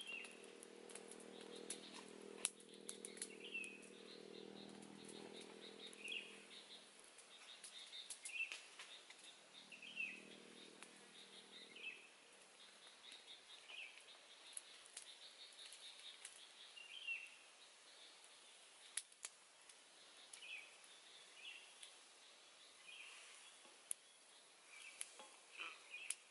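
Quiet outdoor ambience: a bird repeating a short chirp every second or two, with scattered light clicks and a faint low hum through the first seven seconds or so and again briefly around ten seconds in.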